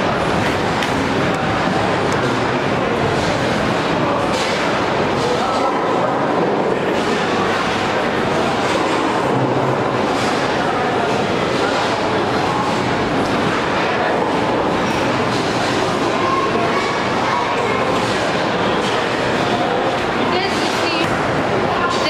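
Busy bowling alley ambience: a steady hubbub of many voices mixed with the rumble of bowling balls rolling down the lanes.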